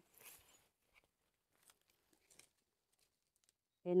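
Faint rustling and crackling of leaves and stems as seedlings are handled in the undergrowth, mostly in the first half second, followed by a few scattered soft clicks.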